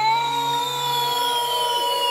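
Synthesized cartoon sound effect: a steady electronic hum of several held tones, with a high whistle gliding slowly down in pitch.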